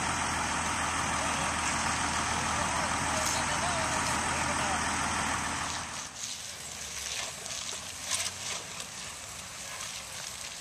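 A large truck engine idling steadily, with a low hum, for the first six seconds, then dropping away suddenly to a quieter background with a few light scrapes.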